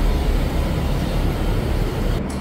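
Steady background noise, an even low rush with no clear events in it.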